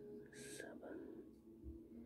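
Near silence with a faint steady hum; a man whispers the number "seven" about half a second in.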